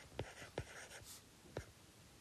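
Stylus writing on a tablet screen, faint: a few light taps with soft scratching between them as letters are handwritten.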